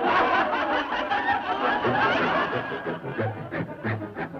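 Cartoon character voices snickering and chuckling. About halfway through, low notes begin repeating at an even pace as the orchestra music picks up.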